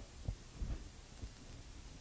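Quiet room tone in a lecture room: a faint low hum with several soft, low thumps.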